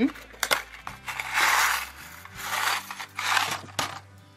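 Small cardboard box of metal brooch pin backs being opened and handled, the pins rattling and scraping inside, in several rustling bursts with a few sharp clicks.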